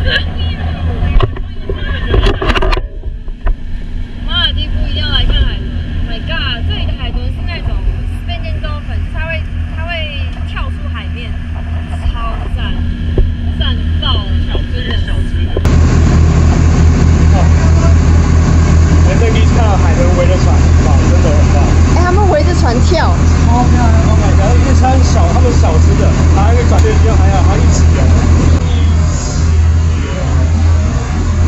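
Motorboat engine running with a steady low drone under people talking. About halfway through, the drone becomes louder and the sound duller.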